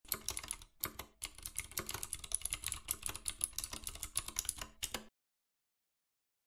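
Rapid typing on a computer keyboard: a quick run of key clicks, with a short pause about a second in, stopping abruptly about five seconds in.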